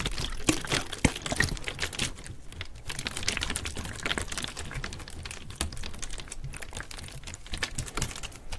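Partly filled plastic water bottle handled close to the microphone: its thin plastic crinkles and clicks in quick runs under the fingers while the water inside sloshes as it is tilted.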